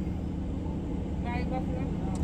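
A car's engine idling, heard inside the cabin as a steady low rumble, with faint speech briefly in the middle.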